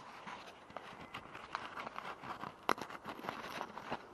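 Charcoal scraped against a plastic bottle while the bottle is handled: irregular light clicks and crackles, with one sharper click about two-thirds of the way through.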